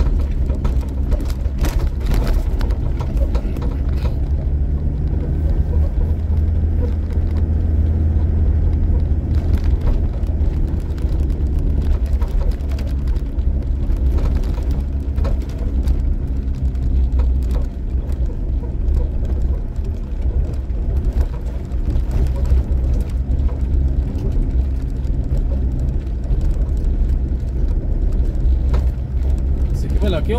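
Car driving over a rough unpaved dirt road, heard from inside the cabin: a steady low engine and tyre rumble with frequent small knocks and rattles from the bumpy surface.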